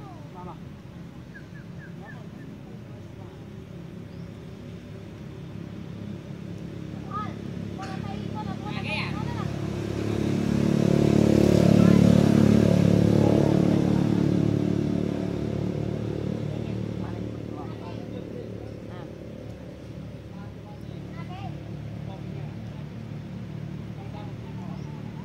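A motor vehicle's engine passing by: a steady low hum that grows louder for several seconds, is loudest about halfway through, then fades away again.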